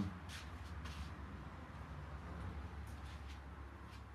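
Quiet room with a steady low hum and a few faint, brief handling rustles and light knocks.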